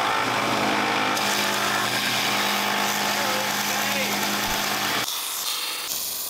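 Belt sander running with the end of a steel tube pressed against the belt, grinding metal over a steady motor hum. About five seconds in, this gives way to the quieter, even hiss of MIG welding.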